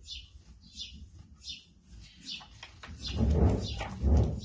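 Faint, short high chirps, a few a second, as of small birds. Then about a second of loud rustling near the end, as a picture-book page is turned while the reader shifts on a hay bale.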